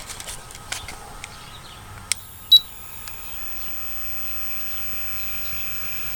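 Plastic clicks as a 24-pin power supply connector is pushed into a Coolmax PSU tester, then a single short high beep from the tester about two and a half seconds in. After the beep the computer power supply runs with a steady hum and a faint high whine.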